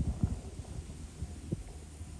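Distant thunder rumbling low and irregularly, loudest just after the start, with a smaller jolt about one and a half seconds in.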